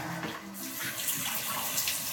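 Water running steadily from a tap into a small washbasin.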